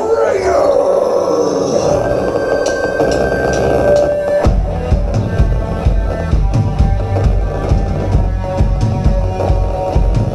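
Live rock band starting a song: a held chord rings for about four seconds, then the drum kit and bass come in with a heavy, steady beat.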